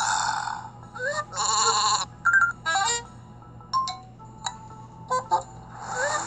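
Cartoon sheep sound effects bleating three times, with short chiming blips in between and light background music under them.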